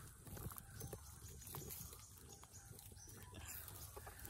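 Faint handling noise: a scatter of soft clicks and rustles from dry grass and wet mud around an eel held in a hand.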